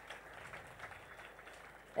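Faint ambient noise of a large seated audience in a hall, with a few soft knocks, dying away just before the end.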